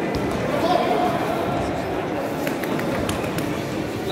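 Voices of futsal players and spectators talking and calling out in a reverberant sports hall, with a few sharp knocks of the ball being kicked on the court in the second half.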